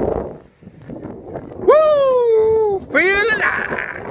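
A man's loud, high-pitched wordless yell about halfway through: one long held note sliding down in pitch, then a shorter rising whoop, trailing off in breathy noise.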